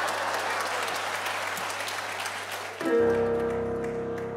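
Audience applauding in a concert hall; about three seconds in, the orchestra comes in with a sustained chord that holds steady.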